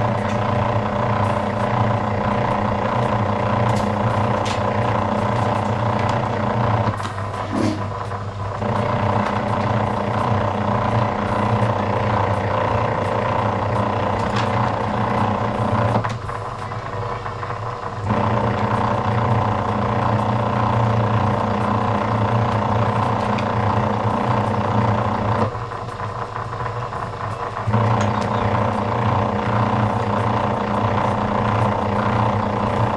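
Motor-driven copper wire-stripping machine running with a steady hum, dipping briefly three times as cable is fed through.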